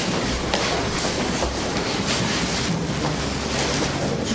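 A steady rustling hubbub of people moving about a hall, with shuffling and plastic bags being handled, and many small scattered clicks and knocks.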